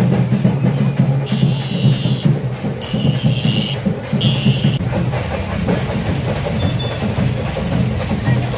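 Music with steady, dense drumming, typical of a kavadi procession's drums. A high, held tone sounds over it three times in short stretches between about one and five seconds in.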